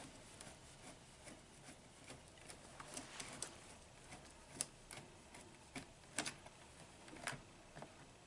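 Faint, irregular clicks and ticks of a small Phillips screwdriver turning a screw out of a door panel, metal on metal, with a few sharper clicks in the second half.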